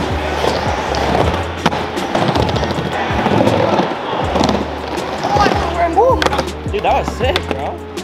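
Skateboard wheels rolling around a wooden bowl, with sharp clacks of the board, over background music. Voices call out in the second half.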